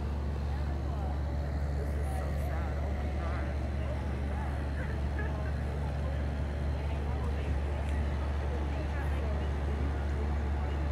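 A steady low mechanical drone, like a heavy diesel engine idling or large machinery running, unchanged throughout. Faint voices in the background.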